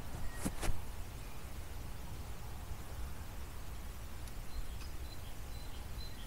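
Woodland ambience with a steady low rumble, two short clicks under a second in, and from about four seconds in a small bird calling a thin, high note repeated about twice a second.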